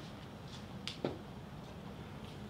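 A faint sharp click and then a soft knock about a second in, over a low steady background hum: small objects being handled and set down.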